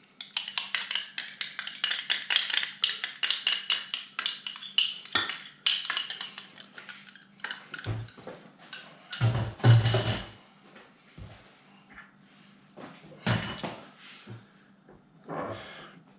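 A metal spoon clinking and scraping rapidly against glass, many small clicks a second for about seven seconds, as ginger is scraped into a glass measuring cup. Then a few separate knocks of things being set down on the stone counter.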